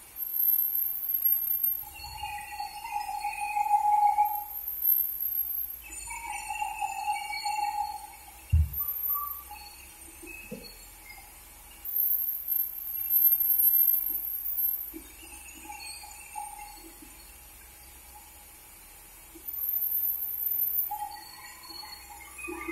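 Vertical band sawmill cutting a wooden log, its blade ringing with a high-pitched squeal in bursts of about two seconds that come again every few seconds, over a low steady hum. A single thump is heard about eight and a half seconds in.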